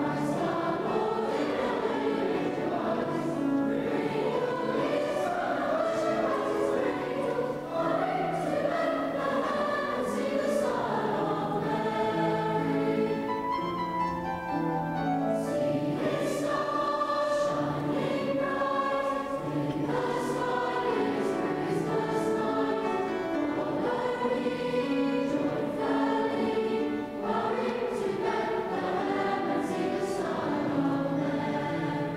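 Large mixed-voice school choir singing a carol in a stone church, its sustained notes carried on the building's echo.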